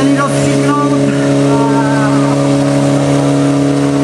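Fire pump engine running steadily at high, constant revs while it feeds two hose lines, with voices shouting over it.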